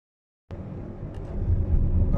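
Car cabin noise while driving at low revs, about 1000 rpm: a steady low rumble of engine and road that starts suddenly about half a second in and grows a little louder, with a couple of faint small clicks. The engine is the car's stock, unchipped 77 kW engine.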